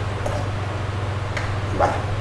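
A steady low electrical hum on the recording, with one short spoken word near the end.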